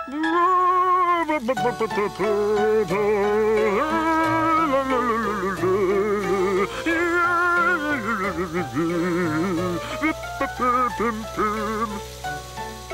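A man's voice singing a wordless tune without accompaniment, each held note wobbling with a wide vibrato.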